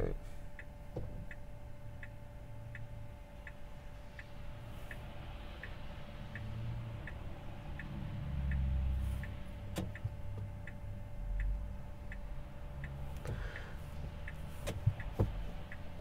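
Tesla Model 3 turn-signal indicator ticking steadily in the cabin, nearly three ticks a second, with the car held stationary. A low cabin rumble lies under it.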